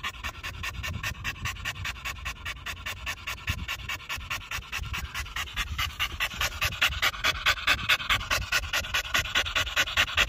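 Blue Staffordshire bull terrier panting, fast and even, the breaths growing louder in the second half.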